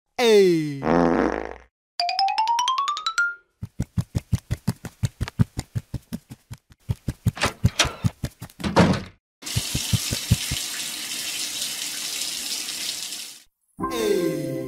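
A string of cartoon sound effects: a falling pitch glide, then a rising one, then a fast even run of clicks at about six a second, and finally a steady hiss like a running shower.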